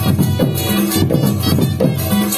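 Live Odia folk drumming for a Danda nacha dance: a hand-played barrel drum beating a fast, busy rhythm, with short ringing low tones between the strokes.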